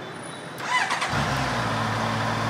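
A 2019 Honda CBR650R's inline-four engine being started: a short burst of starter cranking about half a second in, then the engine catches and settles into a steady idle through its stock exhaust.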